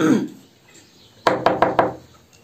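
A quick run of about five sharp knocks packed into just over half a second, starting a little past the middle, after the tail end of a spoken word.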